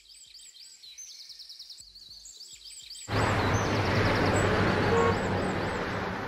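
Birds chirping over quiet background ambience. About halfway through, a steady, much louder street-traffic noise with a low hum comes in under the chirps.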